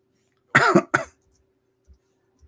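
A man gives two quick coughs about half a second in, the first longer and louder than the second, over a faint steady hum.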